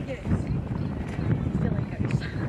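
Wind rumbling and buffeting on the microphone with irregular low knocks, under faint distant voices calling on the field.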